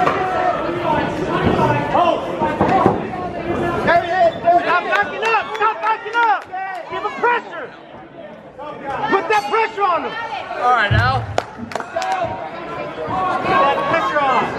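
Spectators' voices overlapping in a large hall, talking and calling out, with a few sharp knocks and one low thump about three quarters of the way through.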